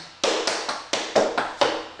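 Tap shoes' metal taps striking a wooden floor in a quick run of sharp taps, about four a second. This is the seven-beat riff walk (touch, dig, heel, dig, toe, heel, heel) danced at a faster tempo.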